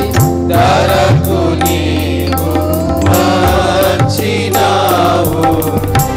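A church worship group of men and women singing a hymn together into microphones, with instrumental accompaniment: a steady low drone, regular drum strokes and low sliding drum notes.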